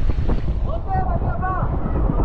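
Water and wind rushing over the microphone as a rider slides down a tube water slide in an inflatable tube, with a short squeal that rises and falls twice about a second in.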